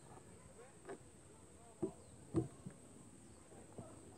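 A few short, faint knocks, the loudest about two and a half seconds in, over a quiet outdoor background with a steady high thin whine.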